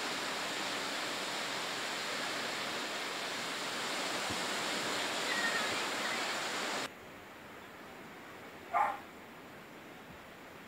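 Steady hiss of small waves breaking on a sandy beach, mixed with breeze on the microphone. About seven seconds in it drops suddenly to a quieter steady hiss. A brief distant call is heard near the end.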